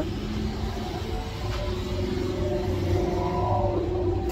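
Steady low rumble of road traffic heard from inside a parked car, swelling slightly in the second half with a faint engine note.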